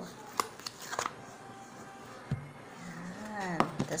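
A plastic food container is handled and tapped as a set gelatin slab is turned out onto a foil-lined tray, with a few sharp clicks in the first second and a thump a little past two seconds. A short vocal sound and more clicks come near the end.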